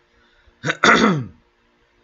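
A man clearing his throat: a short catch, then a louder, longer one that falls in pitch, all within about a second.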